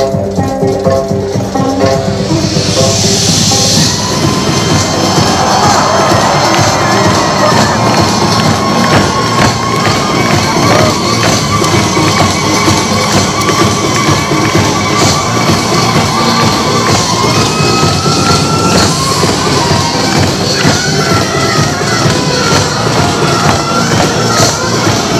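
Loud Korean folk-fusion performance music with a fast, driving drum beat and a sustained melodic line over it, with a short burst of audience cheering a few seconds in.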